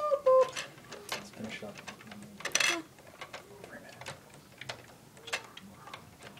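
Plastic Lego pieces clicking and knocking irregularly as hands work a part of a Lego Death Star model, with a louder clatter about two and a half seconds in.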